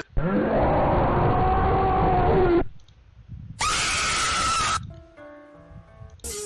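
Screamer jump-scare sound from the horror-compilation video: a loud, harsh scream-roar lasting about two and a half seconds as the frightening face appears. About a second after it stops comes a shorter, higher-pitched noise burst, then faint steady tones.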